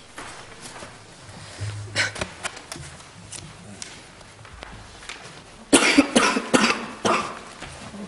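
A man coughing: a short cough about two seconds in, then a run of several coughs in quick succession about six seconds in.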